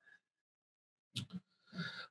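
Near silence for about a second, then a couple of brief, faint mouth noises and a soft voice sound as a person draws breath to begin speaking.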